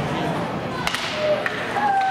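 Sharp clacks of hockey sticks and puck during ice hockey play, two standing out about a second in and half a second apart, over the calls of voices in an ice rink.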